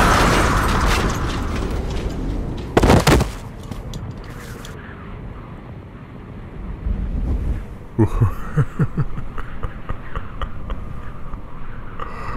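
Film battle sound effects: a heavy explosion decaying over the first couple of seconds, then a single sharp impact about three seconds in. A low rumble follows, and near the end comes a quick run of heavy thuds.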